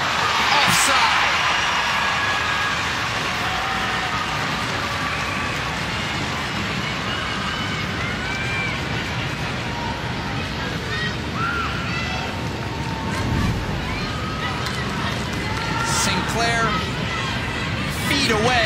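Stadium crowd noise: a swell of crowd reaction to a near-miss on goal in the first second, then a steady murmur with scattered individual shouts.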